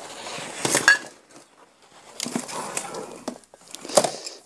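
A large sheet of decoupage paper, dampened on the back, is handled and laid onto a Mod Podge-coated cookbook binder cover, with paper rustling and light handling knocks, including a sharp click about a second in.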